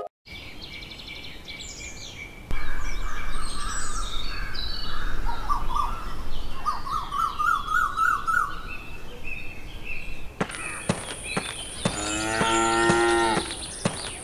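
Rural ambience of birds chirping and trilling, then a cow mooing once, one long call near the end.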